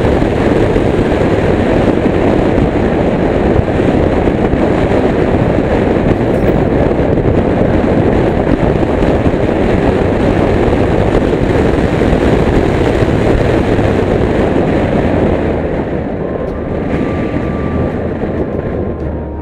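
Steady, loud road and wind noise of a moving car, picked up by a dashcam inside the car; it eases slightly near the end.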